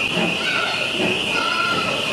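Steady high hiss of steam escaping beneath a slowly passing steam-hauled passenger train, with voices faintly underneath.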